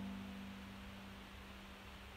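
Kawai digital piano: one held note, struck just before, sounding softly and slowly fading away.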